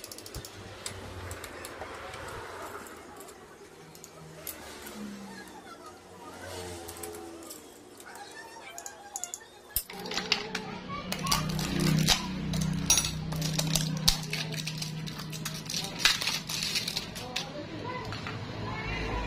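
Hand tools clicking and clinking on metal while bolts on a motorcycle engine's clutch cover are worked with a T-handle socket wrench, over background voices and music. From about ten seconds in the clicks come thick and fast and louder, over a steady low hum.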